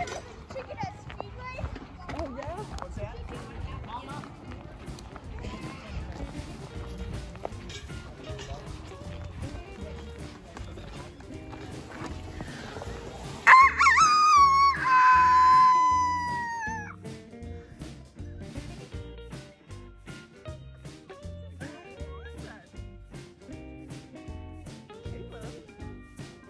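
A person imitating a rooster crow, loud and close, about halfway through: a sharp rising start, then a long held note that slowly falls away over about three seconds. Background music with a steady beat plays underneath.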